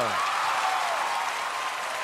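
Studio audience clapping and cheering.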